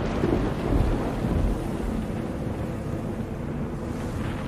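A deep, noisy rumble with no clear tune, slowly fading, the hiss above it thinning out.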